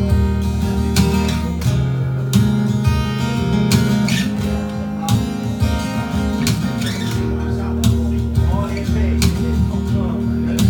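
Red semi-hollow electric guitar strummed in a steady rhythm, amplified through a PA speaker, in an instrumental passage of a song.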